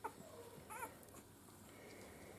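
Faint squeaks from newborn Miniature Schnauzer puppies, with one short, wavering high squeak about three-quarters of a second in.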